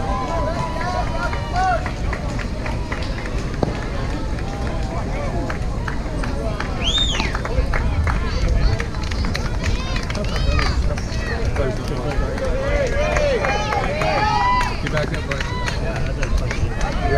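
Voices of spectators and players calling out and chattering at a Little League baseball game, with one high-pitched shout about seven seconds in, over a steady low rumble.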